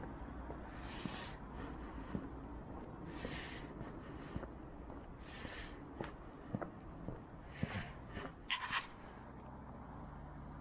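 A walker's breathing close to the microphone, one breath about every two seconds, with faint footsteps on a paved path. A short burst of rustling comes near the end.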